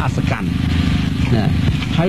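A Buddhist monk speaking in Khmer, giving a Dhamma talk, with a steady low hum under the voice that carries through a short pause in the middle.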